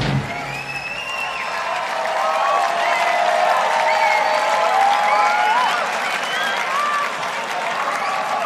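Large festival crowd applauding and cheering, with scattered calls rising and falling in pitch over the steady noise of clapping. The band's last chord cuts off right at the start.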